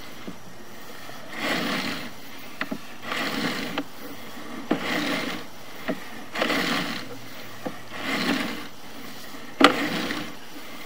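Sewer camera's push cable being pulled back out of the line by hand, in even strokes about every one and a half seconds: each pull a rubbing, scraping swish, with a few sharp clicks between pulls.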